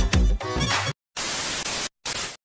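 Background music with a heavy beat cuts off about a second in. After a short gap comes a burst of TV-style static hiss, a glitch transition effect, broken by a brief dropout near the end.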